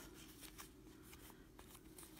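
Near silence, with faint rustling and a few light clicks from yarn and a cardboard pom-pom form being handled.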